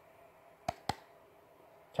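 Two quick, sharp plastic clicks, about a fifth of a second apart, as a Hasbro Star Wars Force Link wristband is switched on.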